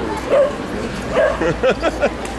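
A dog yipping and whimpering: short high calls, one about half a second in and several in quick succession in the second half.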